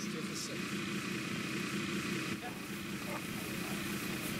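A steady engine drone runs without a break, with faint low voices over it.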